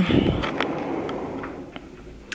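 A curtain being drawn open: a swish that starts suddenly and fades over about a second and a half, with a few light clicks.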